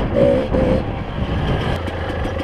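Kawasaki KDX 220 two-stroke dirt bike engine running steadily as it rides along a muddy trail.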